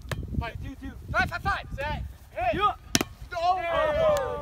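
Teenage boys shouting and calling out during a volleyball game, with a low wind rumble on the microphone and a single sharp smack about three seconds in, a hand hitting the volleyball.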